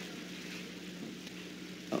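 Quiet room tone with a steady low hum between spoken words. A short spoken word begins at the very end.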